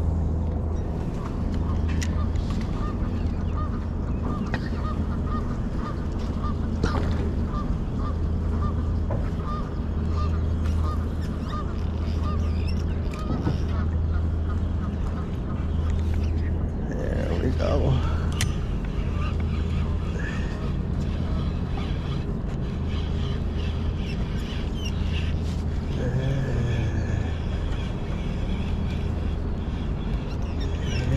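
Geese honking, with calls about halfway through and again near the end, over a steady low rumble.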